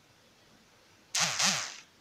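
Near silence, then a little past a second in, a short breathy exhale lasting under a second.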